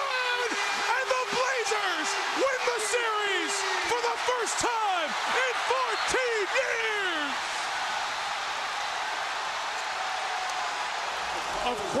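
A packed arena crowd erupting in screams and cheers for a series-winning buzzer-beater. Many overlapping yells and shrieks at first, settling into a steady roar about seven seconds in.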